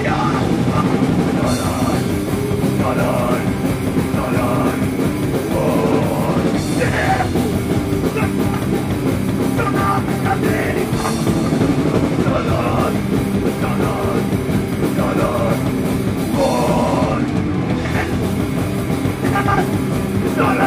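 A live crust punk band playing loud and fast: distorted guitars, bass and a d-beat on the drum kit, with shouted vocals coming and going over it.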